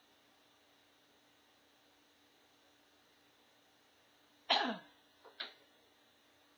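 A person coughs once, loudly and briefly, about four and a half seconds in, followed by a shorter, quieter sound a moment later. The rest is quiet room tone with a faint steady hum.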